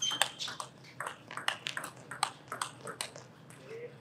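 Table tennis rally: a celluloid-type ball clicks off the rackets and bounces on the table in a quick, irregular run of sharp ticks, several a second, thinning out near the end as the point finishes.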